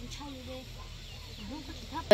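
Faint clucking of chickens, short gliding calls here and there, with quiet talk mixed in.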